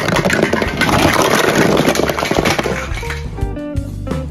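Plastic building blocks tipped out of a cardboard box, a dense clatter of many pieces hitting the floor for about three seconds. It gives way to background guitar music.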